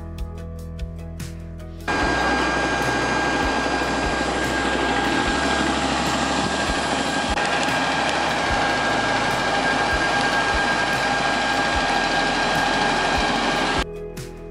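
Jet airliner engines running: a loud, steady roar with a high whine held on a few steady pitches. It starts suddenly about two seconds in and cuts off just before the end.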